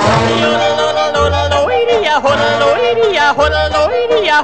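Yodeling over a band accompaniment: the voice flips sharply up and down in pitch several times over a regular pulsing bass.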